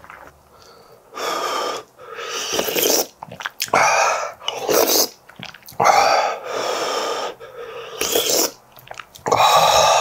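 A person blowing on a spoonful of hot stew to cool it and sipping from it: about eight short, breathy puffs and slurps close to the microphone, with short pauses between.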